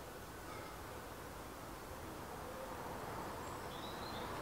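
Faint, steady outdoor background noise with a few brief, faint bird chirps.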